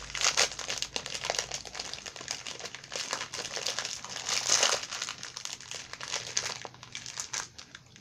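Clear plastic snack wrapper crinkling and rustling as it is peeled open by hand from a crispy rice bar, in an uneven run of crackles with a few louder bursts, dying away near the end.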